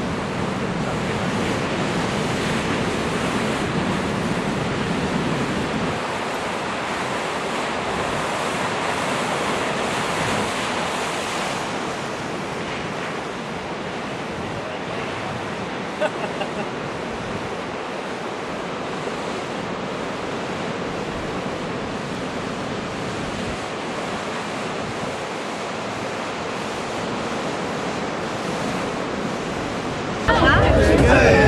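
Ocean surf breaking and washing over shoreline rocks, a steady rush, with one brief click about halfway through.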